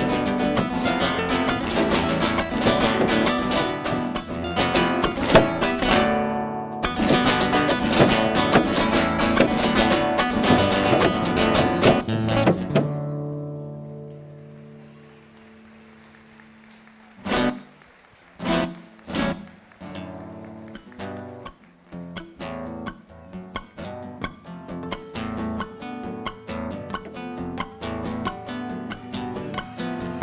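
Acoustic guitar playing a fast malambo rhythm with the dancer's zapateo foot-stomps, the dense run of strokes broken by a short pause about six seconds in. Around thirteen seconds in it dies away almost to quiet; then three sharp strikes come about a second apart, and sparser guitar notes carry on to the end.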